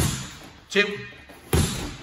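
Gloved punches landing on a freestanding heavy bag: two solid thuds about a second and a half apart, each with a short echo.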